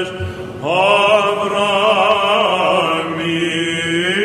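Byzantine chant: cantors sing a melismatic melody over a steady low drone note (the ison). After a brief breath at the start, the melody comes back in about half a second in with a rising note.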